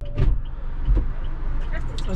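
Low steady hum inside a car cabin, with two sharp knocks about a quarter of a second and a second in.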